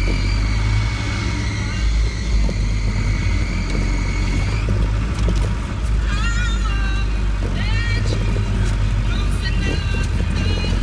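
Land Rover Defender 90 driving slowly along a rough, wet track, heard from inside the cab: a steady low engine and drivetrain drone, with a thin high whine that stops about halfway through.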